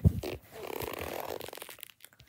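Handling noise from the camera being moved fast over bedding: a thump at the start, then more than a second of fabric rubbing and rustling against the microphone.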